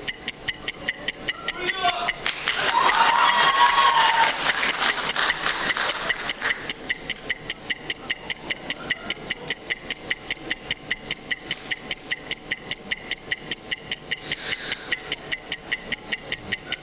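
A countdown clock ticking steadily and evenly, several ticks a second, timing the teams' thinking time before they must answer. Audience laughter and chatter swell over it between about two and six seconds in.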